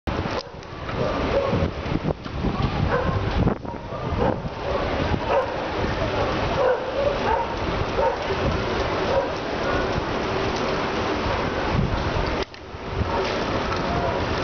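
Wind buffeting the microphone of a camera moving along on a bicycle: a loud, uneven rumbling rush that drops away briefly a few times, with short higher-pitched calls heard over it.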